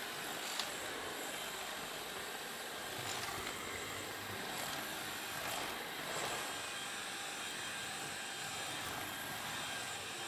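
LG CordZero cordless stick vacuum running steadily with a high motor whine and rushing air as its roller floor head is pushed over a wooden floor.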